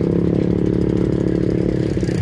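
A small engine idling steadily at constant pitch, stopping near the end.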